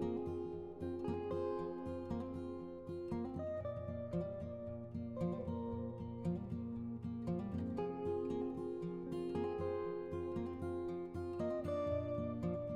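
Background instrumental music with plucked, guitar-like notes over sustained tones.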